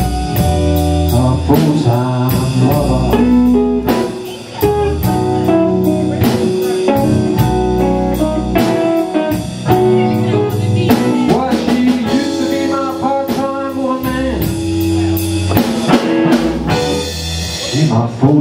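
Live blues band playing: electric guitars, bass guitar and drum kit, with a steady cymbal beat.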